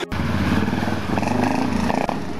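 BMW F650 GS Dakar motorcycle's single-cylinder engine running steadily under throttle, with a brief dip about three-quarters of the way through.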